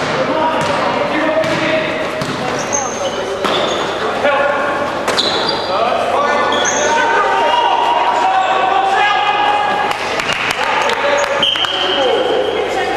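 Sounds of a live basketball game in a sports hall: the ball bouncing, sharp knocks and short high squeaks of players' shoes on the court, with players and spectators shouting over one another, all echoing in the large hall.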